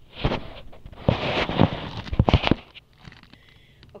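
Handling noise at a pop-up toaster: the phone rubs and scrapes close to the microphone, and several loud knocks and clunks come, bunched around two seconds in, among them the toaster's lever being pushed down to start toasting. A short burst comes just after the start and a longer one from about a second to two and a half seconds, then it goes quiet.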